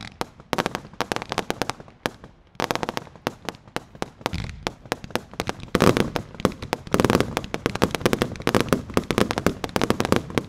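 Consumer fireworks firing rapid volleys of aerial bursts: a dense, unbroken run of sharp bangs and crackle that grows louder and thicker from about four seconds in.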